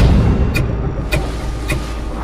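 Trailer sound design: a deep bass rumble with sharp, even ticks about twice a second, like a pulsing countdown.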